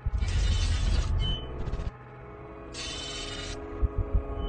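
Dark cinematic intro sound design: a sustained droning tone under deep rumbling and three bursts of hiss-like noise. The rumble eases about halfway through.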